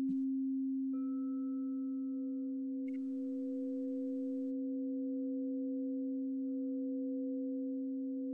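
Crystal singing bowl music: a steady low tone is held throughout, and a second, higher bowl tone comes in about a second in and sustains alongside it.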